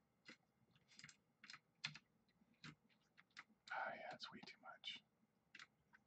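Faint, irregular computer keyboard keystrokes, a dozen or so separate clicks. A brief low mumble comes about four seconds in.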